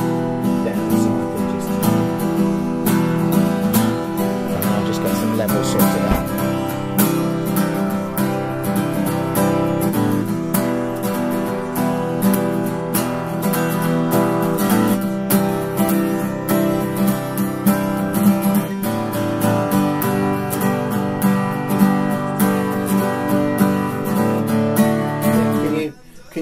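Acoustic guitar strummed steadily, a continuous run of chords with even strokes.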